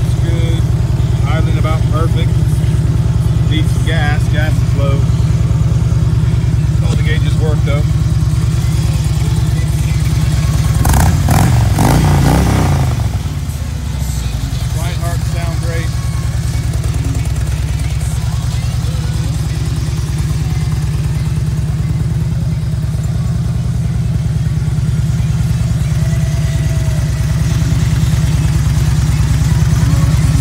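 2008 Harley-Davidson Electra Glide Classic's Twin Cam 96 V-twin idling steadily through Rinehart slip-on mufflers, with one brief throttle blip about eleven seconds in.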